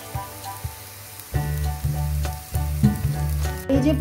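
Fritters shallow-frying in oil in a nonstick pan, a soft sizzle with small crackles. About a second in, background music with a steady beat comes in over it and becomes the loudest sound.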